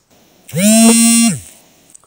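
A woman's voice holding one drawn-out vowel at a steady pitch for about a second, falling off at the end.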